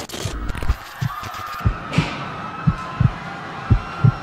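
Heartbeat sound effect: low double thumps about once a second over a faint steady hum, after a short burst of static-like glitch noise at the start.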